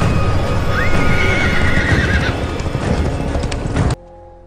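A horse whinnying once, about a second in, a call lasting about a second and a half, over loud music. The sound cuts off suddenly just before the end.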